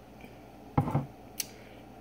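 A short soft sound about a second in, then a single light click as a plastic tumbler is set down on the counter.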